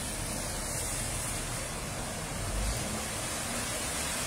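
Car driving slowly through a flooded street, its tyres pushing through the water in a steady wash over the low sound of the engine.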